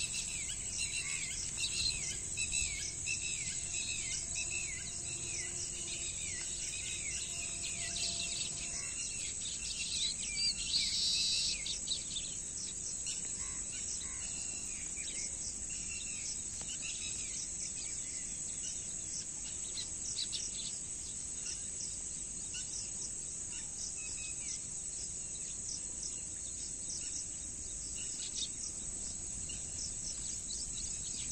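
A steady, high-pitched insect drone runs throughout, with small birds chirping over it. The birds give a run of quick, repeated falling notes in the first few seconds, a brief louder burst of calls about ten seconds in, then scattered single chirps.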